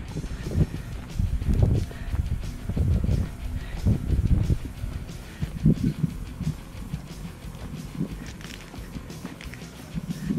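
Wind buffeting the camera microphone in irregular low rumbling gusts.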